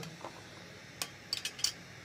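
A few light metallic clicks and clinks as a brass cartridge case and the annealer's metal case-holder bracket are handled: one about a second in, then a quick cluster of three or four.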